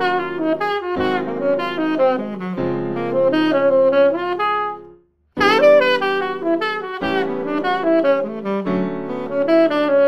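Saxophone playing a diatonic ii-V-I jazz phrase in quick running notes over held backing chords, transposed up a half step (Ebm7–Ab7–Dbmaj7). It stops about five seconds in, and after a short gap the same phrase starts again up a whole step (Em7–A7–Dmaj7).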